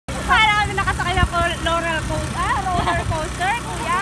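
Motorcycle tricycle engine running steadily, overlaid by a high-pitched voice calling out in short bursts.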